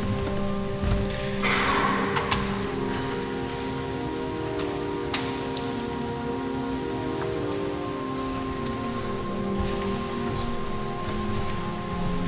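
Pipe organ playing slow, sustained chords that shift from one to the next. A brief rustle comes about a second and a half in, and a few sharp clicks are scattered through.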